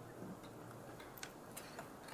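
Quiet pause in a hall with a faint low hum and a few faint, light clicks scattered through it.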